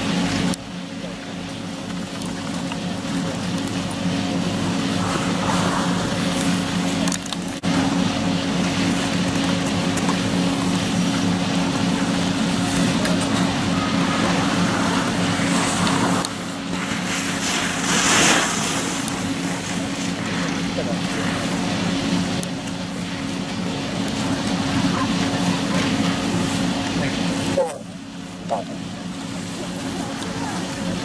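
A steady low mechanical hum with two constant tones under a broad hiss, with a brief louder rush of hiss a little past the middle.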